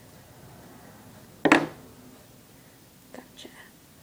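A person's breath and voice: a short, loud, breathy huff about a second and a half in, then two soft murmurs near the end.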